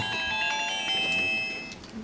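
A chord of high, steady electronic tones, held for about a second and a half and then fading out.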